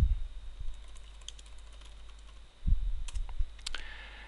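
Typing on a computer keyboard: a scattered run of key clicks, with dull low thumps near the start and again about three seconds in.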